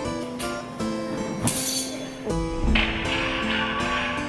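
Background harpsichord music: a run of plucked notes with changing pitches. A low thump comes about two and a half seconds in.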